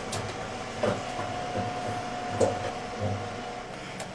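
A few soft knocks from hands handling a cabinet, over a faint low hum and a steady tone that stops near the end.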